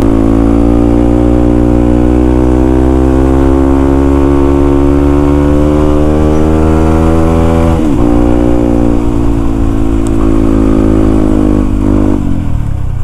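Yamaha WR155R's single-cylinder four-stroke engine pulling under load while riding. Its pitch climbs slowly for about eight seconds, drops suddenly as it shifts up a gear, then climbs again.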